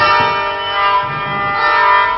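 Live acoustic music from a string duo: ringing plucked-string notes that sustain and overlap, with new notes struck right at the start and again about a second and a half in.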